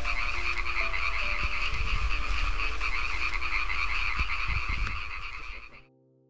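A dense chorus of many frogs or toads calling together, a rapid pulsing trill, over soft piano music. The chorus cuts off abruptly near the end.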